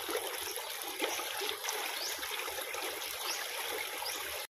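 Drain water gushing out of a pipe from a concrete fish pond and splashing into shallow water, a steady rushing flow. The drain is running strong.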